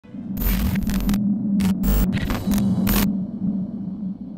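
Logo-intro sound effect: a steady low electrical hum broken by about five short bursts of crackling static in the first three seconds, like a glitch effect.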